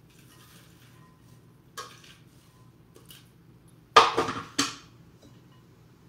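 Hard plastic and glass kitchenware knocking as the food processor's work bowl is emptied into a glass mixing bowl and set back on its base: a light knock about two seconds in, then two loud knocks half a second apart near four seconds.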